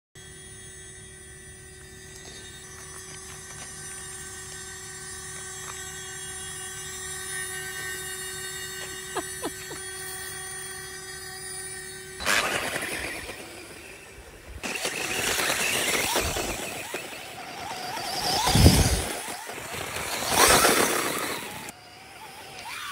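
A steady drone of several held tones for about the first twelve seconds, then a sudden cut to a radio-controlled model dirt bike running over loose dirt: electric motor whine and tyre noise rising and falling in loudness, with two loud peaks near the end.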